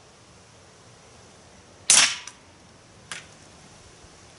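A single shot from a Beeman P17 .177 air pistol: one sharp crack about two seconds in. A much fainter click follows about a second later.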